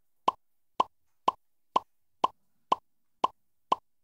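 Game-show sound effect: a steady run of short blips, about two a second, eight in all, each one marking a letter struck off the alphabet strip as the answer letters are revealed on the quiz screen.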